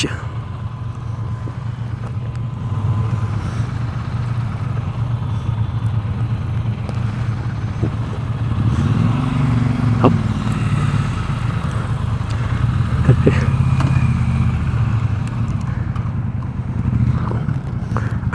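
Motorcycle engine idling with a steady low hum that swells for a few seconds about nine seconds in.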